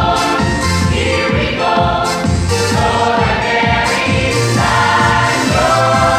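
Mixed choir of young men and women singing a gospel song together, with instruments playing sustained low bass notes and a steady beat beneath the voices.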